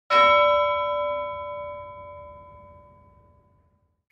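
A single bell struck once, its ringing tone fading away over about three and a half seconds.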